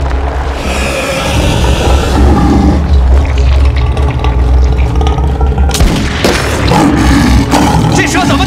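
Tense film score over a deep, sustained low rumble, with a few sudden booming hits in the last few seconds.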